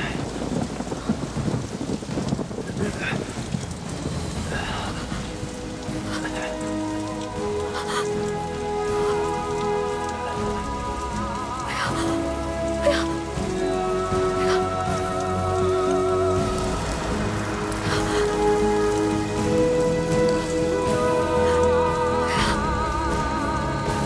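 Steady heavy rain falling throughout. From about six seconds in, slow background music enters with long held notes, some of them wavering.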